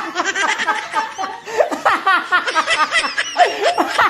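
People laughing, in many short pulses one after another.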